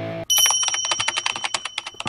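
Rock music cuts off, then a rapid keyboard-typing sound effect runs about ten clicks a second over a faint steady high ring, stopping just before the end.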